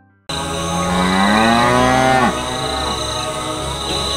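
A cow mooing once, one long call rising in pitch that breaks off a little after two seconds in, over steady background noise that begins abruptly at the start.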